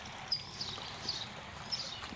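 Faint background noise with two brief high chirps, about a third of a second in and again near the end.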